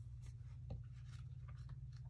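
Faint steady low hum with a few soft, scattered clicks and rustles.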